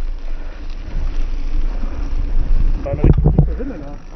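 Wind buffeting the microphone over a steady low rumble of mountain bike tyres rolling on a wet gravel forest road.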